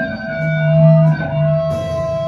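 Amplified electric guitar and bass playing a song's intro: one high note held steady over slow, sustained low bass notes, with a cymbal-like hiss coming in near the end.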